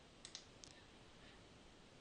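Near silence with a few faint computer-mouse clicks in the first half-second or so.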